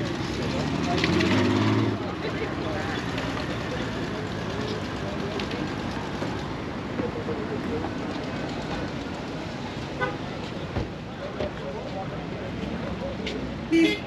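Car-show parking-lot ambience of distant voices and idling cars. A car engine rises in pitch and grows louder between about half a second and two seconds in, and a short toot sounds just before the end.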